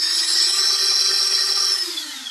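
The armed miniquad's brushless motors spinning with a steady whine, the pitch falling and the sound fading near the end as the throttle comes down.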